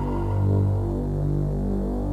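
Low, sustained synthesizer chords from a future bass track, changing about once a second, without vocals.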